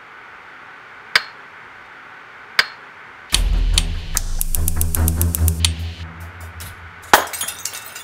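Two sharp ticks, then a lit clear incandescent light bulb struck with a metal hand garden cultivator shatters with a loud crack and a brief tinkle of glass near the end. From about a third of the way in, a heavy-bass music track plays under it.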